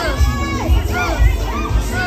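Dance music with a heavy bass beat played over a sound system, with a small group of people shouting and cheering over it.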